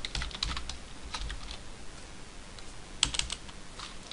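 Computer keyboard being typed on: runs of quick keystroke clicks through the first second or so, a pause, then a short flurry of keystrokes about three seconds in.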